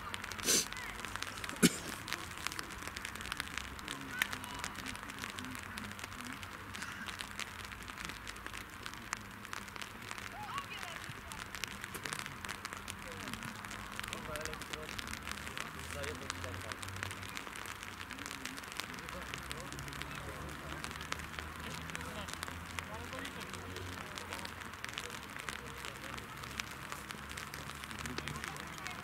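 Outdoor football-pitch ambience: faint, distant voices of players over a steady crackling hiss, with two sharp knocks in the first two seconds, the second the loudest.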